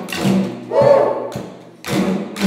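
Many didgeridoos played together by a group of children, a low droning chord that swells and fades in rhythmic pulses, with a thud about once a second keeping time.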